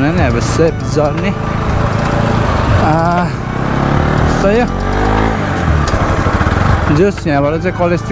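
Motorcycle engine running while riding, with steady road and wind noise, and the engine note falls around the middle. A person's voice is heard over it at times.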